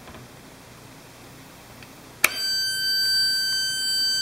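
A click about two seconds in as the pulse circuit is switched on, then a steady high-pitched whine with a string of overtones: a homemade joule-thief transistor oscillator driving a bi-toroid transformer, its coils singing at the switching frequency.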